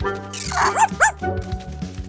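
Cartoon dog yipping twice in quick succession about a second in, just after a short rush of noise, over cheerful children's background music.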